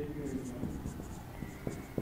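Marker pen writing on a whiteboard: a run of short, faint, scratchy strokes with a few light taps.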